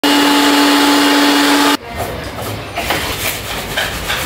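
A hose-fed electric cleaning machine runs loudly with a steady whine as its nozzle is worked over a split air conditioner's indoor coil, cutting off abruptly a little under two seconds in. After that, quieter irregular scrubbing as a plastic AC filter is brushed on a tiled floor.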